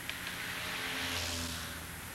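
Faint motor-vehicle noise, a rushing sound with a low engine hum that swells slightly about a second in and eases off near the end.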